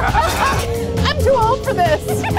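Short, pitched vocal yelps and squeals that rise and fall, over loud haunted-house background music.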